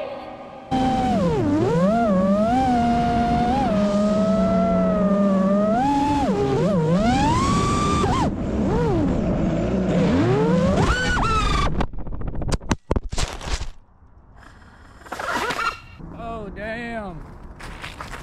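FPV freestyle quadcopter's T-Motor Veloce 2306.5 1950kv motors and props whining, the pitch gliding up and down with throttle. About twelve seconds in a crash cuts the whine off with a cluster of sharp impacts, a crash hard enough to rip the arms off and bury a motor in a fence. Short, uneven sounds follow.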